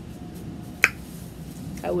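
A single sharp click a little under a second in, after which a woman starts to speak.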